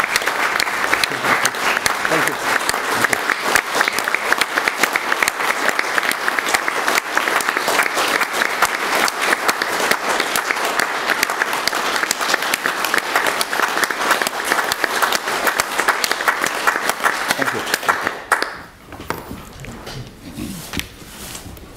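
A roomful of people giving a standing ovation, dense steady clapping that dies away about two seconds before the end.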